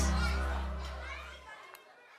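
The end of an upbeat closing song: its last chord rings on and fades, the held bass note cutting off about one and a half seconds in.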